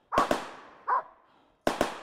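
Rapid gunfire: two sharp shots in quick succession just after the start, a fainter one about a second in, then two more near the end, each with a short echo tail.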